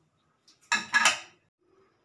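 A short clatter of kitchen crockery about a second in: two knocks close together, as a dish or jar is set down or picked up on the counter.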